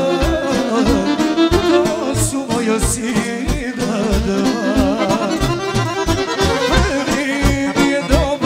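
Live amplified folk music: a man sings an ornamented melody into a microphone, with violin and accordion-like tones over a steady bass beat.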